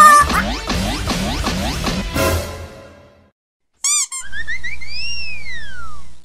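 Cartoon comedy sound effects and music. A run of quick downward-sliding notes fades out, and after a short pause comes a brief warbling tone. Then one long whistle-like tone rises and falls over a low steady hum.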